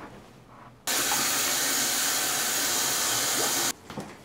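Bathroom tap running steadily into a sink, a loud even rush of water that cuts in abruptly about a second in and cuts off just as abruptly near the end.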